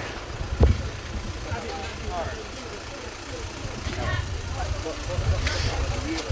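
Rumble of wind and handling on a moving news-camera microphone, with distant voices. A dull thud comes about half a second in and a sharper knock near the end.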